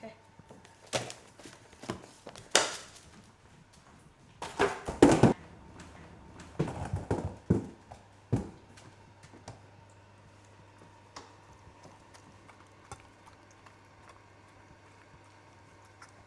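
The chain reaction of a homemade Rube Goldberg dog feeder: books knocking over one after another on a wooden table, then louder rattling clatters around five and seven seconds in as the machine runs on and the skateboard with its steel food bowl rolls down the ramp. After that come only faint light ticks as the dog eats from the steel bowl.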